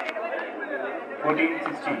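Overlapping voices of people chattering around a volleyball court, with one sharp knock right at the start.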